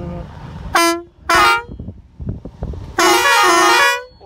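Vehicle horn honking three times: two short honks about a second in, then a long honk near the end, over the low rumble of the vehicle driving on a dirt road.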